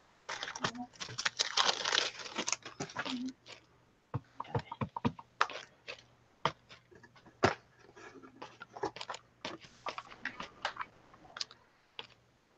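Paper and craft supplies handled on a tabletop: a rustle of paper for the first few seconds, then a run of light, irregular taps and clicks as a stamp is picked up and pressed onto a painted paper journal page.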